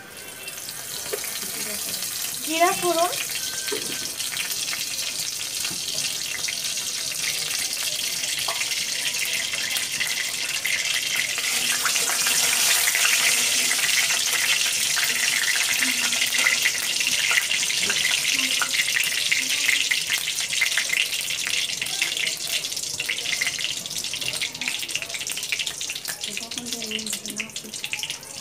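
Hot oil sizzling in a wok with a bay leaf frying in it: a steady hiss that builds over the first dozen seconds, with a metal spatula now and then scraping the pan.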